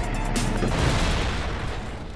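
A cinematic transition sting: a sudden booming impact with a low rumble that fades away over about two seconds.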